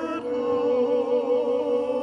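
Small vocal ensemble singing a slow song of praise, several voices holding long notes with vibrato.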